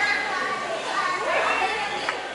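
Young children's voices while they play, a high-pitched voice gliding up and down.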